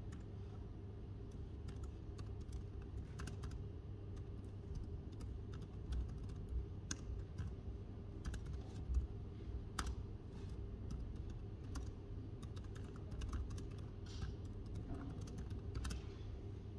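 Typing on an ASUS laptop's keyboard: quick, irregular, soft key clicks that run on throughout, over a steady low hum.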